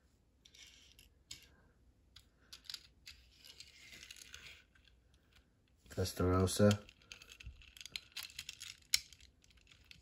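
Small clicks and light scraping from handling diecast models: a toy car rolled and pushed up the ramp of a model flatbed tow truck. A brief murmured voice comes about six seconds in.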